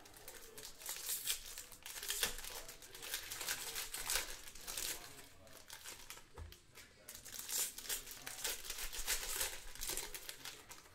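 Foil wrappers of Bowman baseball card packs crinkling and tearing as packs are ripped open and handled: quick, irregular crackling rustles, easing off for a moment in the middle.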